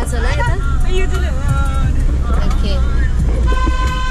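Road and engine rumble inside a moving van's cabin, with people's voices. About three and a half seconds in, a vehicle horn starts a steady, held blast.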